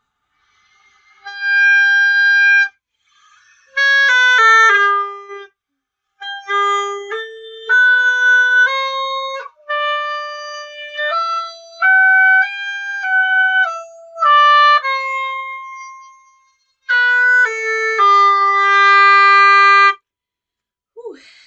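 Oboe playing a G major scale: a held note and a quick run of notes, then the scale climbing an octave in steady notes and coming back down, with several short breaks, ending on a long low note.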